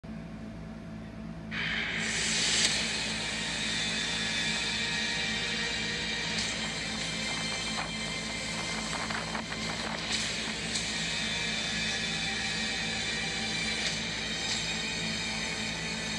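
Background music from a television broadcast, picked up off the TV's speaker, over a steady hiss that starts about a second and a half in.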